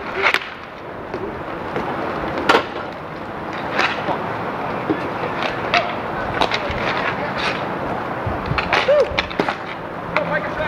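Inline skate wheels rolling on an outdoor sport-court rink surface, with sharp clacks of hockey sticks hitting the puck and the boards every second or so, the loudest about two and a half seconds in.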